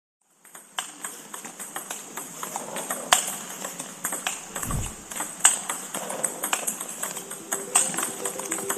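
Table tennis balls being struck and bouncing, a fast, irregular run of sharp clicks that starts about half a second in, with one low, falling boom near the middle.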